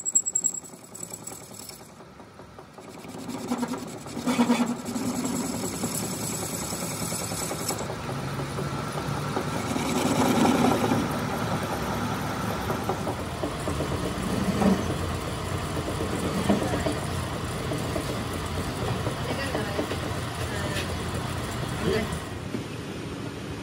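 Metal lathe running, its tool bit cutting across the end of a spinning metal shaft. The sound dips about a second in, builds back up over the next few seconds, and then holds steady.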